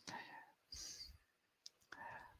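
Near silence: room tone with a few faint clicks and soft noises.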